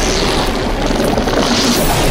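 Loud, dense action-scene soundtrack: heavy booming and crashing over music, with a continuous deep bass.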